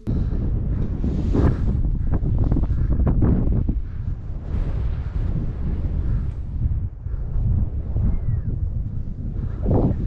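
Strong wind buffeting the microphone: a heavy low rumble that surges and eases in gusts.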